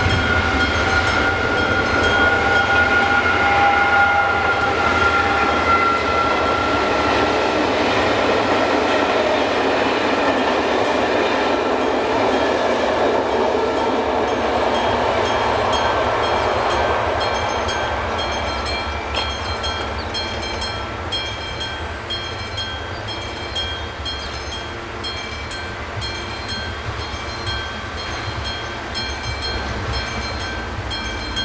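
Level-crossing warning bell, the classic electromechanical bell of an AŽD 71 crossing, dinging steadily about twice a second while the crossing is closed. Under it a train rumbles, loudest in the first half and fading away after about seventeen seconds.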